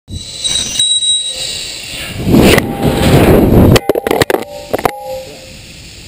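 A loud rushing noise, then a quick run of sharp knocks and clatters as an action camera hits the asphalt and tumbles to rest. A few high, thin tones sound in the first second.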